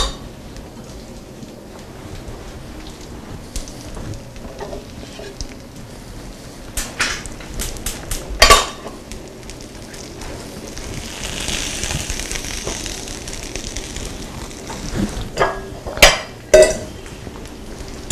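Metal pan and dishes being handled: a few sharp clanks as the oven-hot pan and a plate are set down. In the middle comes a soft sizzle from the hot pan of roasted salmon.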